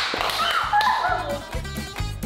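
Upbeat background music with a steady bass beat, with women laughing over it for the first second or so.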